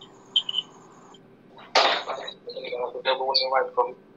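A person's voice coming through a video-call connection, unclear words, starting a little under two seconds in after a near-quiet stretch.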